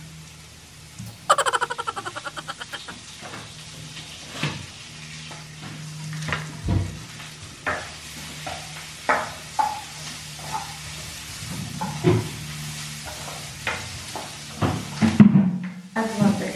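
Butter sizzling in a frying pan on a gas stove as vegetables are sautéed, with a spatula stirring and knocking against the pan. About a second in there is a quick run of clicks.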